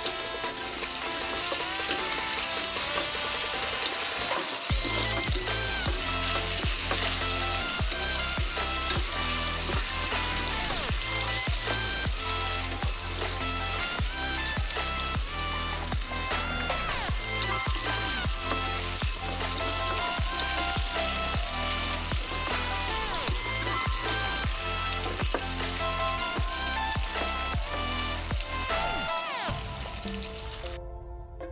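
Cubes of tofu frying in hot oil in a wok, with a steady sizzle as they crisp, under background music whose bass and beat come in about five seconds in.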